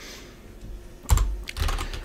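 Computer keyboard typing: nothing for about the first second, then one sharp, loud keystroke followed by several quicker, lighter key clicks.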